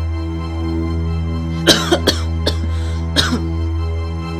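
A man coughing several times in quick, short bursts in the second half while smoking a cigarette, over a steady, sustained background music drone.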